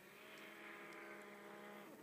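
Faint snowmobile engine running at a steady pitch, the pitch dropping near the end.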